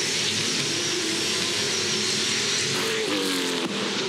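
A pack of V8 Supercar race cars running hard past the trackside microphones, several V8 engines at high revs blending into one steady sound. About three seconds in, engine notes rise as cars accelerate.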